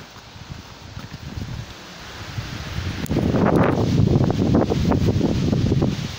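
Low wind rumble on the microphone, then from about halfway a loud rustling and crackling of the vest's synthetic nylon shell fabric as it is spread out and smoothed by hand.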